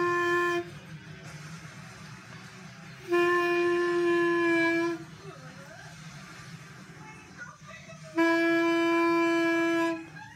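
Clarinet played by a beginner: a held note ends just after the start, then two more steady held notes of about two seconds each follow on the same pitch, with pauses between them.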